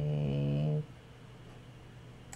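A man's short closed-mouth hum, a steady low 'mmm' that stops abruptly a little under a second in.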